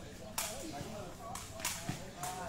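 A sepak takraw ball kicked back and forth in a rally: three sharp cracks, the last two close together.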